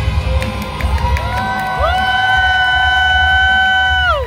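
A group of children singing over a loud backing track: their voices slide up together into one long held note from about halfway through and let it go with a falling slide near the end.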